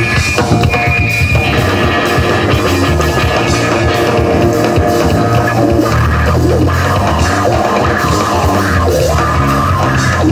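Live rock band playing: electric guitar over drum kit and bass guitar.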